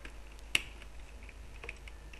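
Typing on a computer keyboard: one sharp click about half a second in, then a run of soft, quick keystrokes as a short word is typed.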